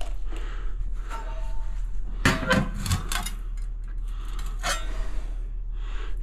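Hard ceramic tiles and tiling tools knocking and clinking as they are handled, with a few quick taps about two seconds in and another near the end.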